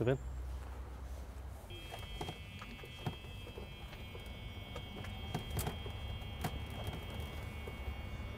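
Small electric golf cart driving, giving a steady high whine with a few light clicks and knocks over a low rumble.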